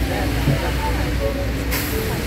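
Outdoor ambience of a city square: a steady low rumble of traffic, a wash of splashing fountain water and people's voices, with a brief hiss near the end.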